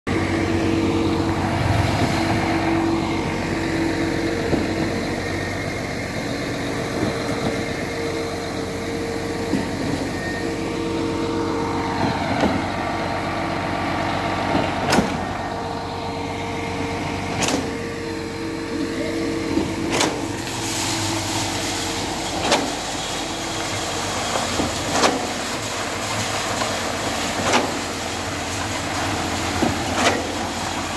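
Truck-mounted concrete pump running with a steady engine drone while pushing concrete through its boom hose. From about the middle on, a sharp knock comes every two and a half seconds as the pump's pistons change stroke.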